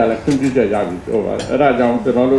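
A man speaking into a desk microphone, reading a statement aloud.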